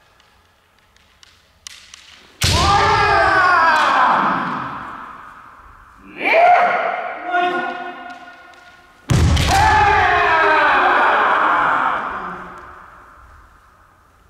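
Kendo kiai, long drawn-out shouts ringing through a large gymnasium: one about two seconds in, a shorter one around six seconds, and a loud one about nine seconds in, held for about three seconds. The first and last begin with a sharp impact, as a strike or foot-stamp lands.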